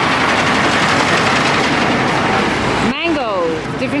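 Heavy truck driving past close by: a loud, steady rush of engine and road noise that stops abruptly about three seconds in.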